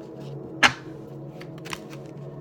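Cards being handled and shuffled in the hands, with one sharp card snap about two-thirds of a second in and a couple of lighter flicks later. Soft background music runs underneath.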